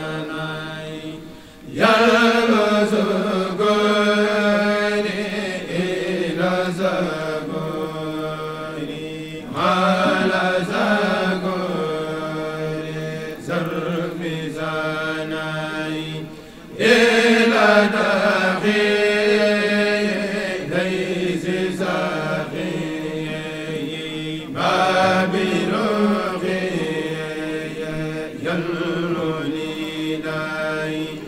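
A Mouride kourel, a group of men chanting khassida together into microphones without instruments. The chant runs in long phrases, each beginning with a loud swell about every seven to eight seconds, with short breaks near the start and about halfway.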